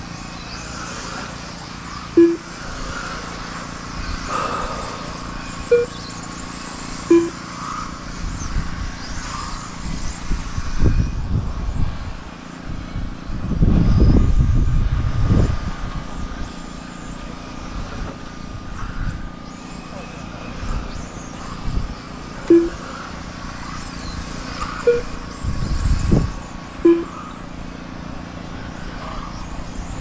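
Electric 1/10-scale front-wheel-drive touring cars racing, their motors whining up and down in pitch as they pass. Short beeps from the lap-counting system sound six times as cars cross the timing line, and a low rumble comes and goes around the middle.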